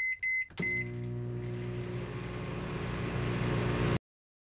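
Microwave oven keypad beeping three quick times, then the oven starting and running with a steady hum that swells slightly before cutting off suddenly.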